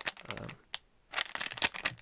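Plastic anti-static bag crinkling and crackling as a circuit board is slid out of it, in two bursts of crackles with a short pause between them.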